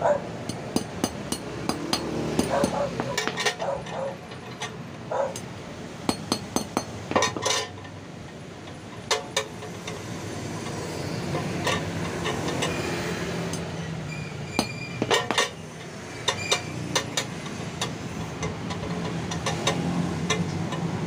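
Light hammer taps and metallic clinks from a thin steel ABS sensor disc being straightened on a flat metal block, and the disc clicking against a glass plate as it is checked for flatness. The disc is bent, which keeps the ABS warning light on. The taps come in short irregular clusters throughout.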